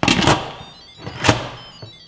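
Lid of an electric pressure cooker knocking down onto the pot as it is closed: two sharp knocks about a second apart, the second the louder.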